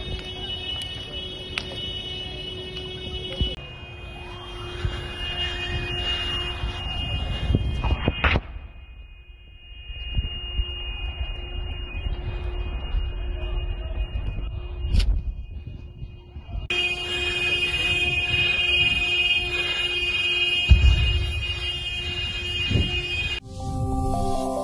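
Outdoor ambience with uneven low rumble under a steady high-pitched tone that carries on through several cuts. A short electronic jingle starts near the end.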